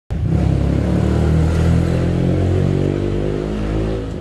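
A motor vehicle engine running steadily at low revs, a loud even hum whose pitch eases slightly lower over the seconds.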